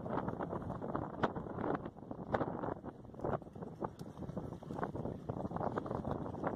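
Wind buffeting the microphone, a steady rushing with many short, irregular crackles.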